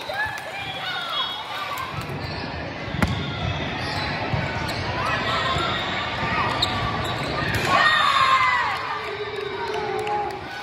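Indoor volleyball game sounds in a large hall: players' scattered shouts and calls with a sharp ball hit about three seconds in, and louder calling near the eight-second mark.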